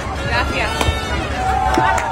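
Passengers' voices in an airliner cabin over a steady low cabin hum, with one voice holding a long drawn-out note from about halfway through and a few sharp clicks.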